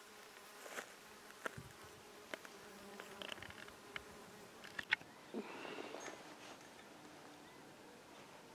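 Faint buzzing of a flying insect, swelling as it passes close about five and a half seconds in, with a few light clicks scattered through.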